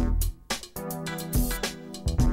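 Music soundtrack with a steady drum beat and held notes.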